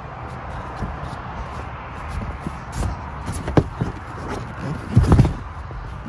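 Footsteps and handling knocks of a person moving about on a boat's deck, with the loudest knocks about five seconds in, over a steady low hum.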